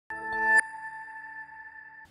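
Short musical sting for a TV news logo: a chord swells up for about half a second and cuts off sharply, leaving a high ringing tone that slowly fades away.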